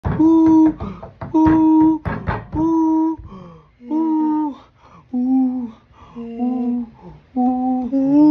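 A man and a chimpanzee hooting: seven long, steady 'hoo' calls of about half a second each, with quick panting breaths between them. The calls drop a little in pitch about five seconds in.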